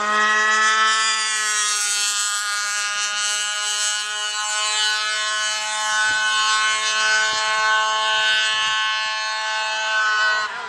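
HPI Baja 1/5-scale RC car's small two-stroke petrol engine running at high, steady revs. Its whine rises slightly over the first second or two, then holds.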